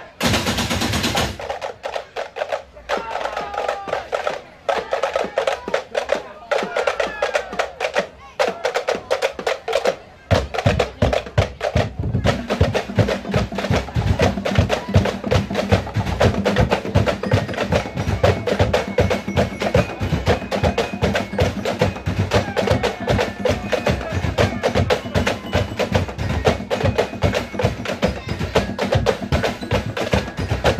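A drumblek percussion ensemble playing: bamboo tubes clatter in a fast, dense rhythm. About ten seconds in, the deep beat of large barrel drums joins.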